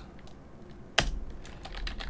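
Typing on a computer keyboard: a few light keystrokes with one sharper, louder key click about a second in.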